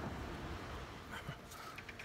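Faint outdoor background noise with a few soft clicks from a hand-held phone being handled and turned.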